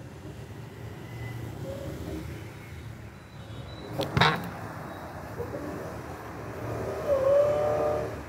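A steady low background rumble, with a sharp knock about halfway through as the phone is handled, and a short pitched sound near the end.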